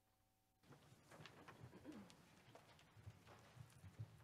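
Near silence: faint room noise in a church sanctuary, with scattered soft knocks and rustles, coming up from dead quiet just under a second in.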